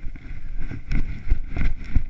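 Footsteps crunching through snow at a walking pace, several steps in quick succession, with wind buffeting the microphone.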